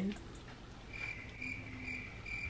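Cricket chirping: a regular run of high chirps, about two a second, starting about a second in.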